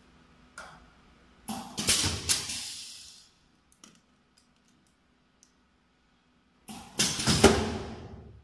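Pneumatic pouch filling and sealing machine cycling: two sudden bursts of compressed-air hiss, about a second and a half in and again near the end, each fading away over a second or so, with faint clicks between.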